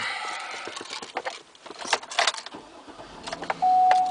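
Keys jangling at the ignition of a 2007 Cadillac Escalade, then its V8 starting with a low rumble about three seconds in. A steady single tone begins near the end.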